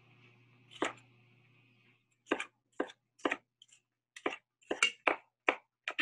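A chef's knife dicing a red bell pepper on a wooden cutting board. There is a single knock a little under a second in, then from about two seconds in a steady run of short knife strokes against the board, about two a second.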